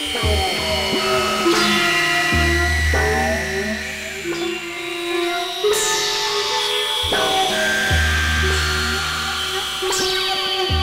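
Experimental synthesizer music: layered sustained tones and drones. A deep bass drone sits under them through much of the middle and end. New tones strike in about a second and a half in and again near six seconds, the second with a high falling swoop.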